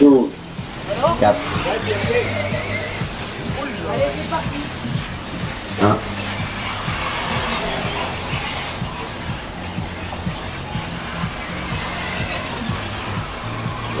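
Music playing, with a public-address voice calling out single numbers about a second in and again near six seconds in.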